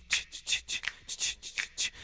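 A voice in a children's song makes a rhythmic run of hissing "ch-ch-ch" sounds that imitate a toothbrush scrubbing, about four or five strokes a second.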